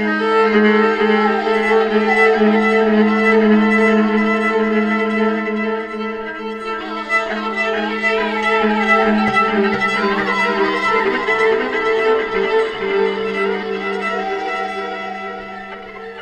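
Violin played with a bow, carrying the melody over a live band, with a steady low note held underneath. From about halfway through, the violin line turns busier, with quick wavering runs.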